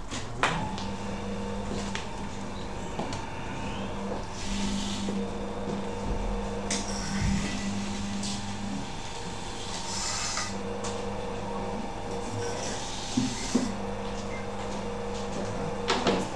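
Electric potter's wheel running with a steady motor hum, switched on with a click about half a second in. Its tone shifts and drops out a few times as the speed is changed.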